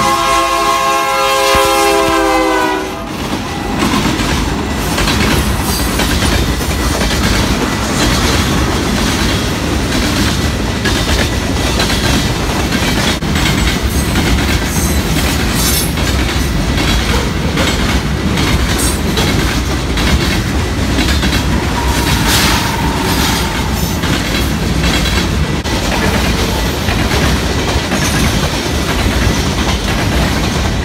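Canadian Pacific diesel freight train: the locomotive horn sounds a multi-note chord that cuts off about three seconds in, then the locomotives and a long line of covered hopper cars pass close by with a steady rumble and clickety-clack of wheels over the rail joints.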